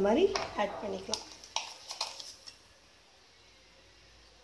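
A metal ladle clinking against the side of a metal cooking pot as the dal is stirred: a handful of short knocks over about a second and a half.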